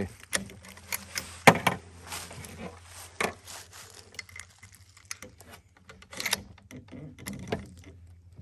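Bolt of a Remington 700 bolt-action rifle being worked and cartridges handled while reloading: a run of metallic clicks and clacks, the sharpest a bit over a second in.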